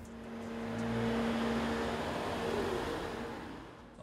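A car driving past, its noise swelling to a peak about a second in and then fading away.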